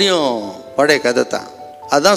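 A man's narrating voice, a few words in the first second and a half, over soft background music with held tones.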